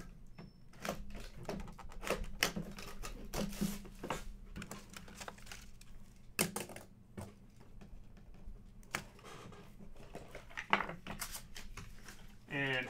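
Hands unwrapping and opening a shrink-wrapped cardboard trading-card box: irregular crinkling of plastic wrap, taps and scrapes of the cardboard, and rustling of packing paper as the card inside is lifted out.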